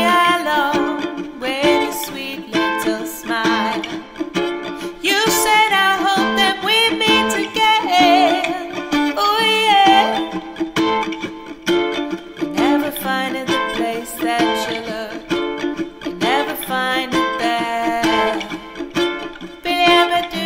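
Ukulele played as accompaniment to a woman singing, her held notes wavering in pitch.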